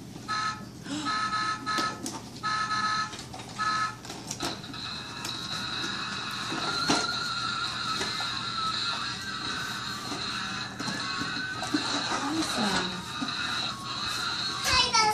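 An electronic toy sounding a run of short beeps, then a thin, high electronic tune that holds on for several seconds, with children's voices faint beneath it.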